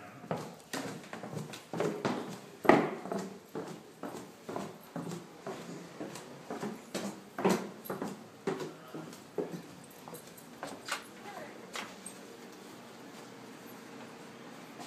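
Footsteps going down a staircase and then across a floor, about two steps a second, two of them heavier than the rest; the steps thin out and stop about ten seconds in.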